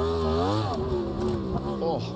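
Onboard sound of a factory Yamaha YZR-M1 MotoGP bike's inline-four engine. In the first second its pitch swings up and back down as the rear tyre loses grip in a highside crash.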